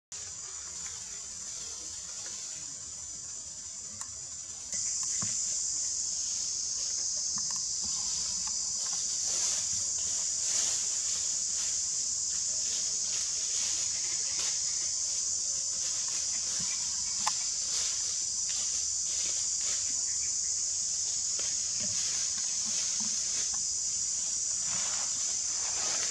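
Steady high-pitched insect chorus, which gets louder about five seconds in, with a few faint clicks over it.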